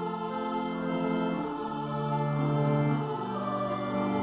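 Two-part treble choir (soprano and alto) singing slow, held notes in Latin over keyboard accompaniment.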